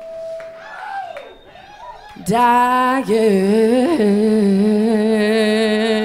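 Live rock band's female lead singer singing a soft, wavering phrase over a faint held keyboard tone. About two seconds in she belts a loud, long note that she holds with a slight waver.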